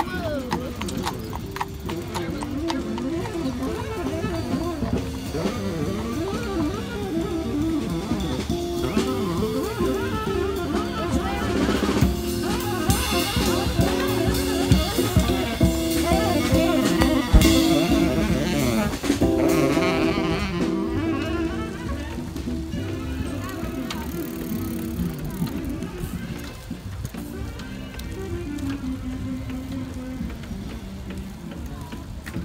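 Live street band playing drum kit, upright bass and acoustic guitar, louder around the middle and fading toward the end.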